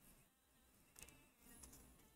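Near silence: faint room tone, with a soft click about a second in.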